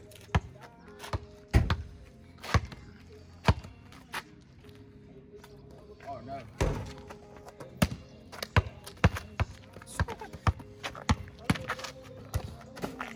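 Basketball bouncing on an asphalt street: a few separate bounces in the first half, then dribbling at about two bounces a second in the second half.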